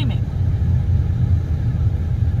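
Steady low rumble of a running car, heard from inside the cabin.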